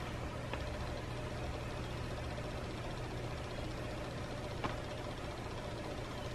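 Steady low background hum with faint hiss, room noise, with a faint click about half a second in and another near five seconds.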